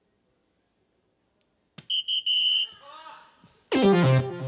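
A soft-tip dart hits the DARTSLIVE electronic dartboard with a sharp click about two seconds in. The board answers with three quick high electronic beeps and a fainter falling chime, its scoring sound for a triple. Near the end a louder electronic sound effect with a falling pitch starts, the board's end-of-turn cue.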